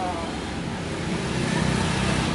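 Steady low rumble of road traffic, with engine noise from passing vehicles.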